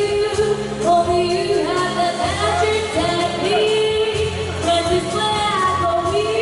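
A woman singing a slow pop song into a microphone over a live band with keyboards and drums, holding long notes.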